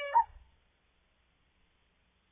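Tail end of a rooster's crow: a held, pitched call that closes with a short final note and stops about half a second in.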